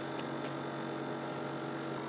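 Steady low hum with a thin high tone above it, heard from inside a stopped car.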